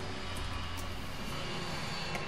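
Steady low hum and hiss of background noise, with a couple of faint taps from computer keys being typed.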